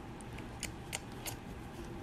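Faint scattered clicks and taps from the stiff pages of a board book being handled and turned by a toddler.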